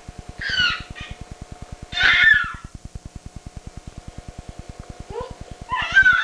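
A six-month-old baby's high-pitched squeals and babbling cries: a short one about half a second in, a louder one about two seconds in, and another starting near the end. A faint, fast, regular low buzz sits underneath.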